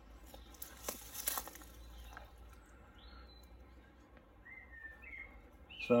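A few short, thin whistled bird calls in the second half, over a low steady outdoor background, with a brief rustling noise about a second in.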